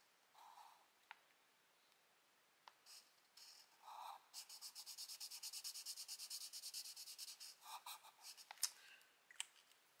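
Felt-tip marker colouring in a square on paper. A few short strokes come first, then from about four seconds in a run of quick back-and-forth scribbling, several strokes a second, lasting about three seconds.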